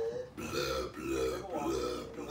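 A man belching: a long, drawn-out belch starting about half a second in.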